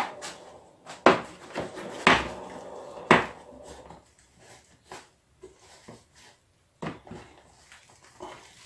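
Handling knocks and rustles from a foam-padded prop hand with claws as its wire-armatured fingers are bent into position on a glass-ceramic hob: three sharp knocks about a second apart, then fainter rustling and small clicks, with one more knock near the end.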